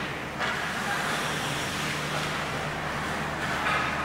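Indoor ice rink ambience during a hockey practice: a steady low hum under an even hiss of skating and activity on the ice, the hiss growing a little about half a second in.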